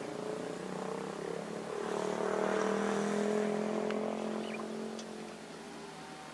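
Heavy diesel engine running with a steady drone that swells louder about two seconds in and fades again after about four seconds.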